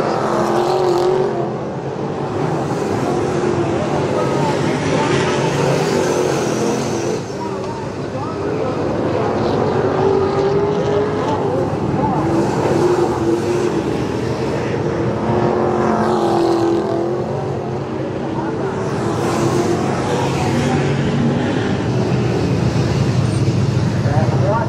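V8 dirt-track race sedans running hard around a clay oval, engines revving and easing as the cars pass. The engine note rises and falls continuously with several cars on track.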